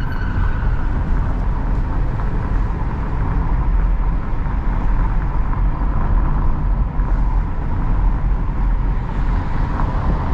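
Steady engine and road noise inside the cabin of a 2022 Hyundai Creta SUV driving at city speed, mostly a deep, even rumble with a faint steady whine above it.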